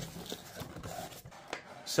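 Soft rubbing and scraping of a cardboard product box being opened by hand, its inner tray sliding out of the paperboard sleeve, with a few light ticks.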